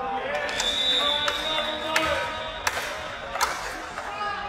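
Players' voices calling out during a goalmouth scramble, with several sharp knocks of the football being struck, echoing in a large indoor hall. A steady high tone is heard for about a second and a half early on.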